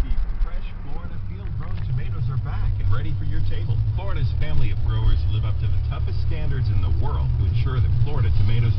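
Steady low engine and road rumble heard inside the cabin of a moving car, with indistinct talking over it.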